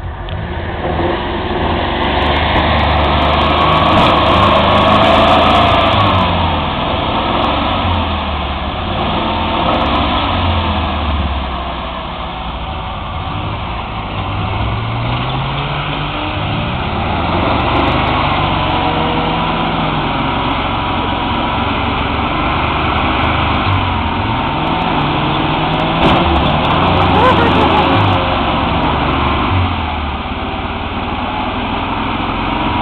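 A 4x4 off-road vehicle's engine revving again and again, its pitch rising and falling, as it churns through deep mud.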